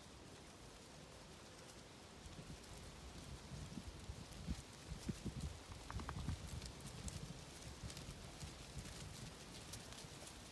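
Faint, irregular soft thudding of a flock of Zwartbles sheep's hooves as they run over grass, building up about two seconds in.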